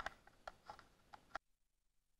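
Faint, scattered clicks and taps of a plastic network cable tester being handled, about seven small knocks in just over a second, then the sound cuts off abruptly.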